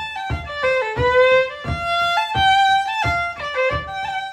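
Solo fiddle playing an Irish traditional tune slowly, in G minor: a single bowed melody line with sliding notes. Soft low thuds fall about twice a second underneath.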